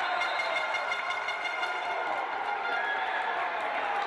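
Spectators in an indoor handball hall, a steady crowd noise with a sustained pitched tone held through it.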